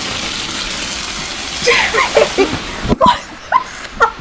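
Hot vegetable oil sizzling and spattering loudly as silkworm pupae go into the pan and the oil flares up into flames. From about halfway, startled cries, with a sharp knock about three seconds in.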